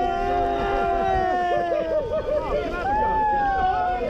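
Several men yelling together in long, drawn-out shouts, their voices overlapping at different pitches, with a fresh yell rising in about three seconds in.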